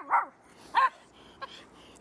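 Small grey-and-white dog barking twice in short, pitched barks about two-thirds of a second apart, a sign that it is eager to be put to work.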